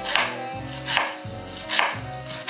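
Santoku knife slicing a red onion on a bamboo cutting board: three cuts, a little under a second apart.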